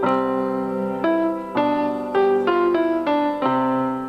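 Electronic keyboard playing a slow melody, one note or chord struck about every half second and each held, with the sound fading away near the end.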